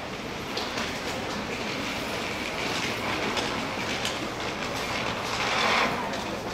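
Steady background noise of a tiled underground concourse, swelling briefly near the end.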